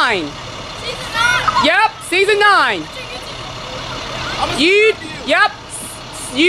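Children shouting long calls from the open windows of a passing school bus, each rising and falling in pitch: one fading just at the start, then about two seconds in and again about five seconds in. The bus's engine runs low underneath.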